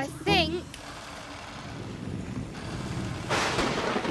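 Heavy rain in a cartoon storm, a steady hiss that swells and turns sharply louder about three seconds in.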